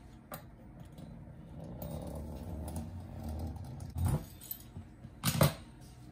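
Metal fluted pastry wheel rolled along fresh pasta dough on a granite countertop, trimming off the excess edge of the agnolotti strip: a soft low rumble for about two seconds, then a few sharp knocks and clinks of the metal cutter against the counter.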